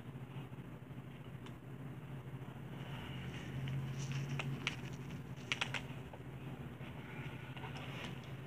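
Gloved hands rummaging through damp compost in an aluminium foil pan: soft rustling with a few short, sharp crackles, bunched about four to six seconds in, over a low steady hum.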